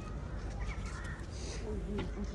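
Outdoor ambience: a bird calling over a steady low rumble, with faint voices coming in near the end.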